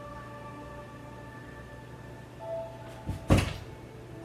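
Two sharp knocks against a door about three seconds in, the second louder, over quiet background music.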